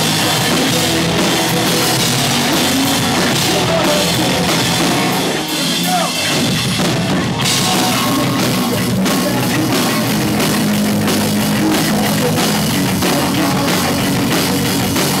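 A live rock band playing: electric guitars over a drum kit, loud and dense. The cymbals drop out briefly about halfway through and the full band comes back in about a second and a half later.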